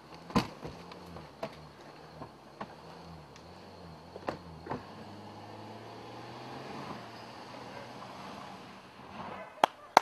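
An SUV's engine running and pulling away, its note rising a little about five seconds in. There is a sharp knock about half a second in, a few lighter knocks after it, and sharp cracks near the end.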